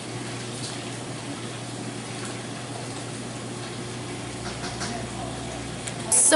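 A steady, even rushing noise like running water, with a few faint clicks. Faint voices are heard near the end.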